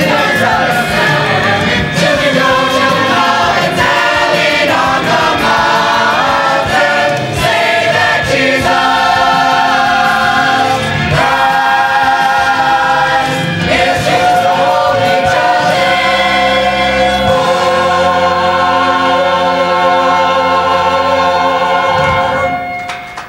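Mixed high school concert choir singing; over the last few seconds the voices hold one long final chord, which stops at the end.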